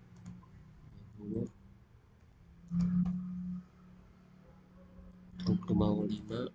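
Computer mouse clicking while lines are drawn in CAD software, with a short wordless hum from a man about halfway through and brief voice sounds near the end.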